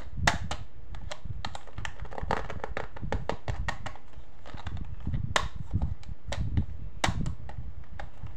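Fingers and nails handling a hard plastic toy handbag close to the microphone: irregular clicks and taps, a few sharper than the rest, over low handling noise.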